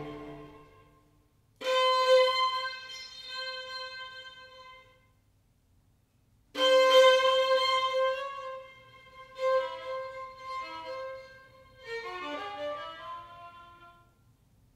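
Bowed strings from a string quartet, led by a violin: long held notes with near-silent pauses between them, then shorter notes and a quick falling run near the end.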